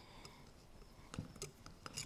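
Faint small clicks and scrapes of a long, thin screwdriver tip working against the main jet inside a Marvel-Schebler carburetor bowl, metal on metal. There are a few scattered ticks, most of them in the second half.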